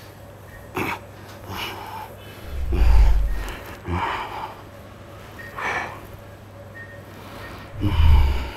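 A man breathing hard through a set of incline dumbbell presses: short, forceful exhales every second or so. The loudest thing is a low rumble about three seconds in, as the pressing starts.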